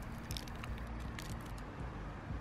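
Soft crinkling and crackling of a clear plastic wrapper being peeled off a kneaded eraser, a few faint crackles over a low steady background rumble.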